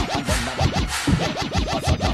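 Dancehall DJ mix with turntable scratching: quick back-and-forth pitch sweeps over a steady bass-drum beat.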